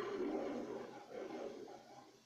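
MGM lion logo roar played through a screen's speaker and picked up by a camera. It comes in two roars, the second starting about a second in.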